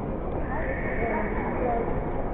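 Indistinct, distant voices over a steady background rumble in a large hall, with a high drawn-out tone joining about half a second in.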